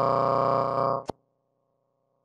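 Transmission audio glitch: the speaker's voice freezes into a steady, unchanging held tone for about a second. It cuts off with a sharp click and leaves a faint steady hum as the link drops out.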